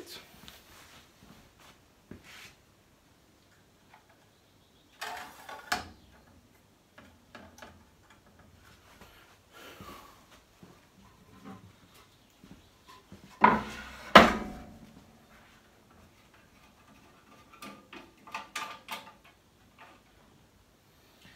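A long ash board being handled and laid onto the metal table of a jointer-planer that is not running: scattered knocks and scrapes of wood on metal, the loudest two sharp knocks about 13 to 14 seconds in.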